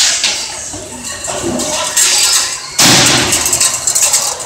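Metal bangs and clatter as a bull bursts out of a bucking chute, with shouts in an echoing indoor arena; the loudest crash comes about three seconds in.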